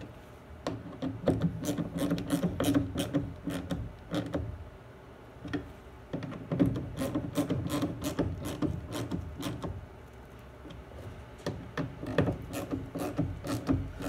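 Hand tool tightening the screws on a plastic intake airbox lid: three runs of rapid clicking and rubbing, with short pauses between them.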